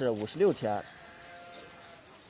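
Sheep bleating: two short, wavering calls in the first second, then only low background.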